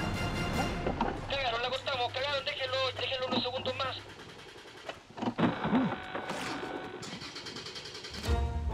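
Tense background music with a short, crackly walkie-talkie voice transmission over it from about one to four seconds in. Brief mumbled voices follow near the end.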